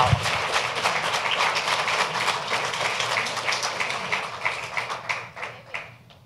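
Audience applauding, the clapping thinning out and dying away near the end.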